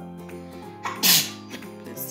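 Background music plays throughout; about a second in, a person lets out a short, loud, hissing burst of breath with a falling voice in it, like a sneeze.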